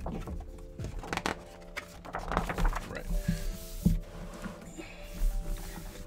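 Background music, with sketchbook paper pages being turned and rustling as the book is pressed flat, and a few soft knocks, the sharpest about four seconds in.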